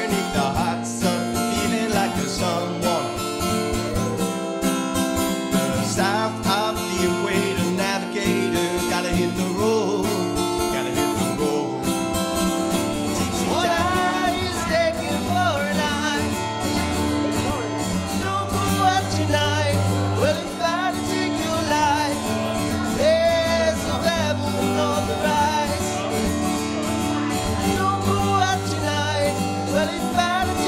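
Acoustic guitar strummed steadily, with a man singing over it, the voice mostly in the second half.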